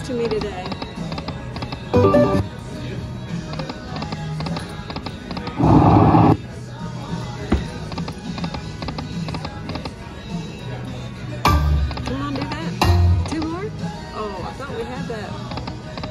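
Lightning Dollar Link Corrida de Toros slot machine playing its spin sounds and music, with a short loud electronic sting each time a spin starts or the reels land, four times in all, the loudest about six seconds in. Casino chatter runs underneath.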